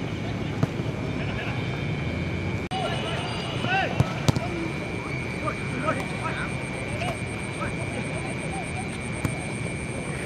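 Outdoor football-pitch ambience: a steady background rumble with a faint high whine, and scattered distant shouts and calls from players after about three seconds. Two sharp knocks come close together about four seconds in.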